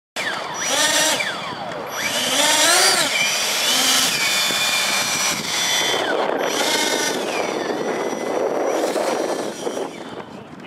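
Twin electric ducted fans of an RC model A-10 jet whining, throttled up and down in several rising-and-falling surges, with a steadier high whine between, as the model taxis on the runway.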